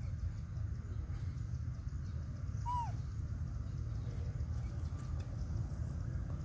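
Steady low rumble of wind noise on the microphone, with one short animal call falling in pitch about two and a half seconds in.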